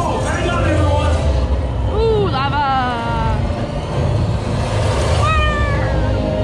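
Flying-theater ride soundtrack: a steady low rumble of flight effects, with a wavering high vocal cry about two seconds in and a shorter falling cry near the end.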